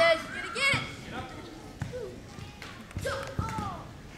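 Bare feet thudding and landing on a hardwood gym floor during a karate form, several thuds, the loudest near the start and about a second in, with short high-pitched voices.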